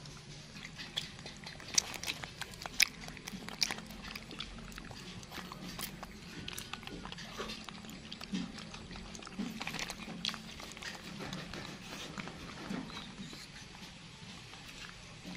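Pet monkeys handling and eating longan fruit: scattered sharp clicks of shells being cracked and peeled, with chewing and a few short low animal sounds.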